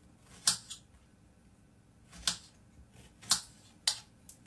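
Kitchen knife cutting strawberries on a chopping board: about five sharp taps of the blade striking the board, spaced unevenly, the loudest about half a second in.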